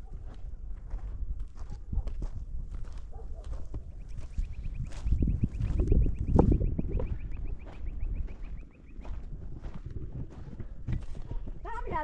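Footsteps crunching on stony, gravelly ground as people walk across a rocky hillside, with a low rumble of wind on the microphone that swells about five to seven seconds in. A fast, faint, high ticking trill runs in the background for several seconds in the middle.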